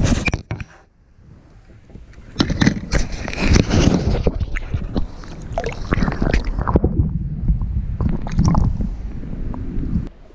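Water sloshing and gurgling around a camera dipped at and below the surface beside a kayak, with irregular knocks and scrapes of handling against the hull. There is a quieter stretch about a second in, then from a couple of seconds in it turns into splashing and gurgling.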